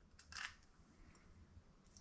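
Near silence, broken by a brief faint metallic clink about half a second in as a chrome towel-rail foot is set down onto a screw held on the tip of an upturned screwdriver.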